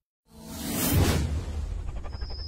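Whoosh sound effect of an animated title sting: after a moment of silence, a rush of noise swells to a peak about a second in and then fades, over a low bass rumble.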